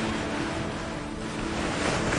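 Soundtrack music whose soft held tones give way to a rushing wash of noise that swells near the end.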